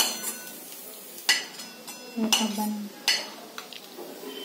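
Steel kitchen utensils clinking: a steel slotted spoon knocking against a steel kadhai and plate as roasted dry-date pieces are scooped out, about five sharp clinks roughly a second apart.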